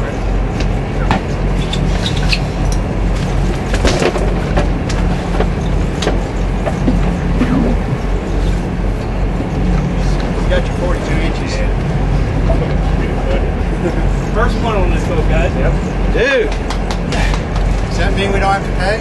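Fishing boat's engine running with a steady low drone, under scattered knocks and clatter on deck and indistinct voices near the end.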